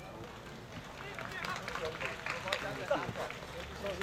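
Indistinct voices of people talking in the background, over the soft hoofbeats of a horse cantering on a sand arena.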